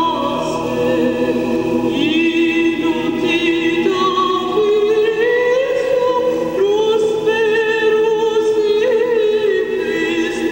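A choir singing long held notes that step to a new pitch every second or two.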